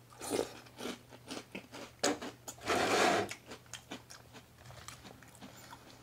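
Mouthful of crunchy ring cereal in milk being chewed close to the microphone: a string of short crunches, with a louder, longer crunch about three seconds in.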